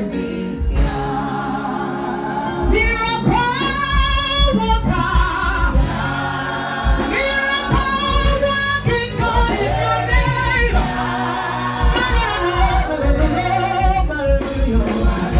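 Gospel music: voices singing with a wavering, held pitch over a steady low drum beat.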